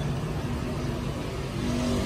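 Kitagawa drill press's electric motor running steadily with a low, even hum, smooth and quiet.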